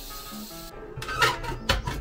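Lid of a Supor stainless-steel pressure cooker being twisted open and lifted off, with a few short scrapes of metal on the pot rim starting about a second in, over background music.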